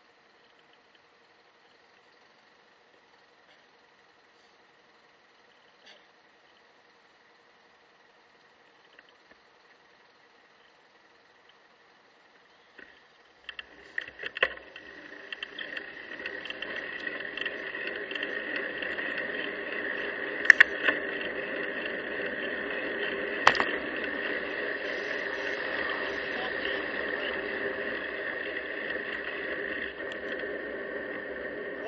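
Near silence with a faint steady hum for the first half. About halfway through, wind and road noise on a bicycle-mounted camera's microphone build up as the bike sets off and gathers speed. A few sharp clicks and knocks sound over it.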